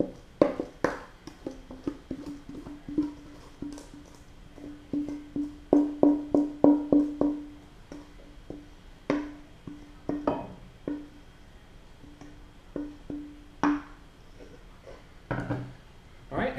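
A stainless steel mixing bowl is knocked and scraped against the rim of a glass loaf pan as wet batter is emptied out. The bowl rings with one steady tone, loudest during a quick run of taps about six seconds in.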